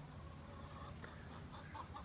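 Backyard hens clucking faintly, with a few short calls in the second half.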